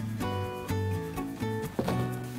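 Instrumental background music: held notes changing in steps over a low bass line.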